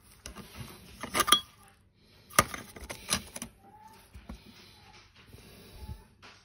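Background clattering: a run of sharp knocks and rattles of hard objects, loudest about a second in and again around two and a half and three seconds in.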